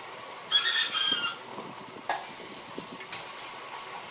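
A short, high-pitched squeal of several tones lasting about a second, followed about a second later by a single sharp click.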